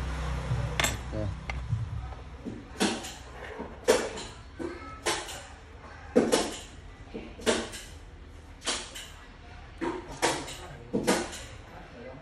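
About ten sharp clinks and knocks, spaced irregularly about a second apart: small metal speaker parts and tools being handled and set down on a workbench.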